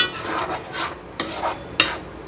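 Perforated stainless-steel ladle stirring and scraping a thick chana dal and jaggery filling around a kadai: about five short metal-on-pan scraping strokes.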